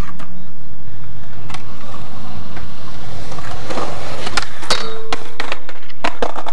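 Skateboard wheels rolling on concrete, then several sharp clacks about four to six seconds in as the loose board hits the ground and clatters to a stop, with a brief ringing tone among them.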